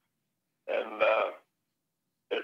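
A man clearing his throat once, a short vocal sound of under a second near the middle.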